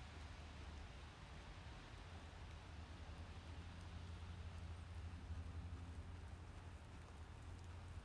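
Faint outdoor background with a steady low rumble, and the soft, faint hoofbeats of a horse jogging on the dirt arena footing.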